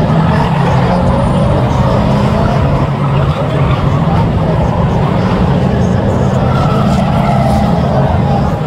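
A pack of 2-litre National Saloon stock cars racing round the oval, their engines a loud continuous drone.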